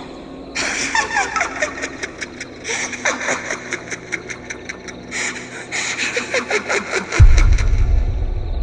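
Distorted, eerie voices with rapid pulsing laughter, a ghostly-voice sound effect, ending in a sudden deep rumble about seven seconds in.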